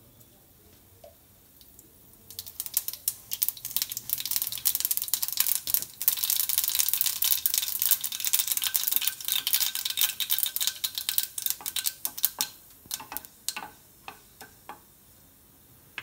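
Mustard seeds crackling and popping in hot mustard oil in a kadai, a sign the oil is hot enough for the tempering. The crackle starts about two seconds in, grows to a dense rapid popping through the middle while a spatula stirs the seeds, and thins to a few scattered pops near the end.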